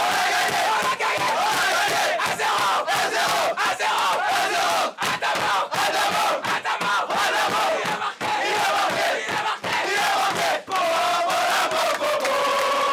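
A group of footballers chanting and shouting together in a huddle, many loud overlapping voices at once, with frequent sharp smacks cutting through.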